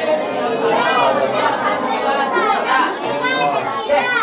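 A group of children reading a sentence aloud in unison, their many voices overlapping.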